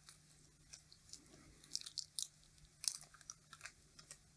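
Yellow insulating layer being peeled off the windings of a small switch-mode power-supply transformer: faint crackling with scattered sharp ticks, the loudest bunched about two and three seconds in.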